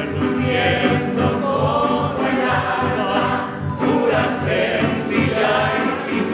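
Mariachi band singing together, men's and women's voices, over violins and the steady strummed beat of guitarrón and vihuela.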